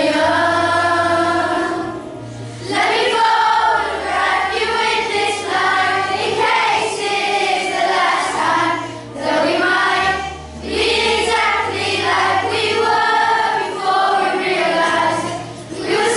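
A children's choir of primary-school pupils singing a song together, in phrases of a few seconds with short breaths between them, over a musical accompaniment with a low bass line.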